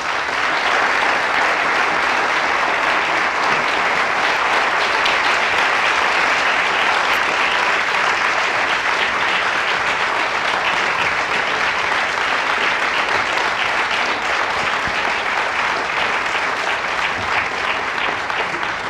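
Audience applauding: the clapping builds quickly at the start and then holds steady and sustained.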